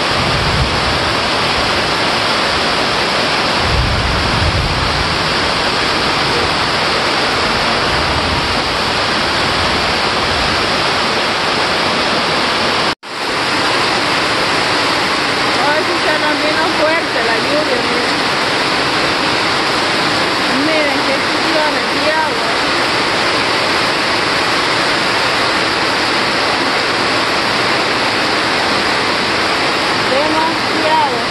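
Heavy downpour, a dense, steady roar of rain that breaks off for an instant about thirteen seconds in. A low rumble sits under it for the first ten seconds or so.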